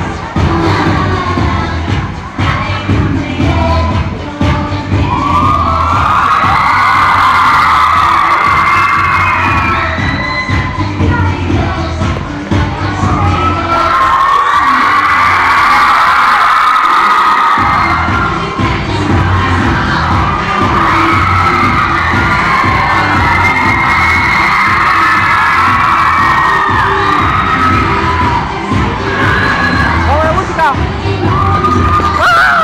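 Loud dance music with a steady beat, with a large crowd of young people screaming and cheering over it. About halfway through, the beat drops out for a few seconds while the screaming carries on, then the beat comes back.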